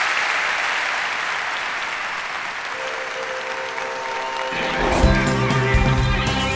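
Audience applauding at the end of a talk, an even wash of clapping. About three seconds in, music comes in over it, and from about four and a half seconds on music with a steady bass line takes over as the applause fades under it.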